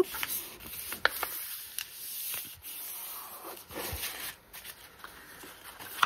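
Hands rubbing, creasing and shifting layered sheets of paper, with scattered light taps and rustles.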